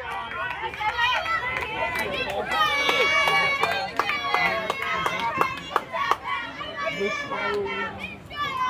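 High-pitched young voices shouting and cheering over one another, with a few sharp claps or knocks scattered through.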